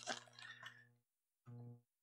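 Near silence: faint crinkling of a fast-food burger wrapper being handled, over a low steady hum that cuts in and out.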